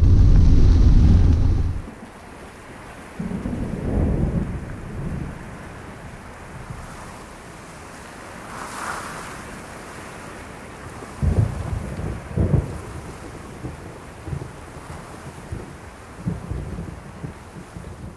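Loud wind noise on the microphone for under two seconds, then a quieter thunderstorm: rolling thunder rumbles, the strongest about four seconds in and again around eleven to thirteen seconds in, over a steady hiss of rain.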